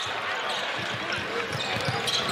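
A basketball bouncing on a hardwood court and players' footsteps as they run up the floor, heard as short low thumps at an uneven pace over a steady arena background noise.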